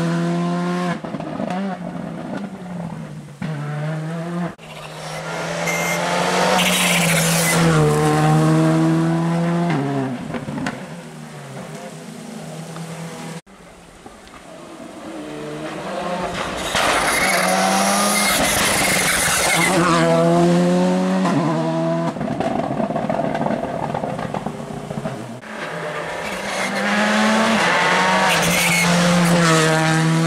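Rally cars driven flat out on a tarmac special stage, beginning with a Škoda Fabia R5, several cars passing in turn. Each engine's pitch climbs hard and drops sharply at every gear change, swelling as the car nears and fading as it goes. The sound cuts off abruptly about 13 seconds in.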